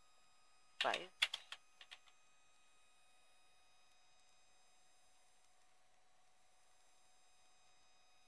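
A brief murmured word about a second in, then a few faint computer keyboard keystrokes as a search term is typed. After that only a faint steady electronic hiss and whine.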